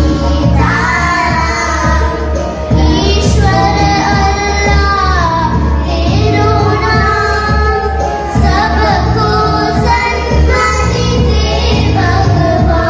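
A group of children singing a Tamil patriotic medley into microphones, amplified through a hall PA, over accompanying music with a steady low pulse. The sung phrases rise and fall continuously, with short breaths between lines.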